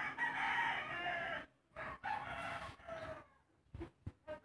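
Crowing call: one long call, then two shorter ones.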